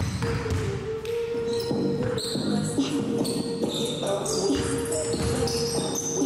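A basketball being dribbled on a hardwood gym floor, a series of bounces, over background music with a steady held note.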